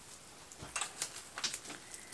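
Faint rustling and a few light clicks from flower stems and greenery being handled on a table.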